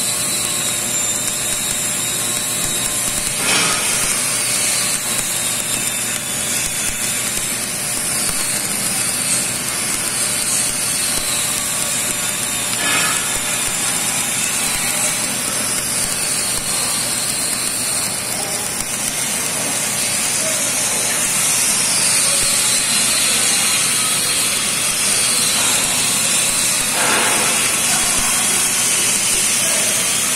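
Stick-welding arc burning on a stainless steel electrode (316/309) while laying a fill pass: a steady crackling hiss, broken by a few louder pops from spatter.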